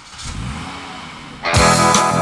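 A car engine revving. About one and a half seconds in, a guitar-led rock song starts loudly over it with a steady beat.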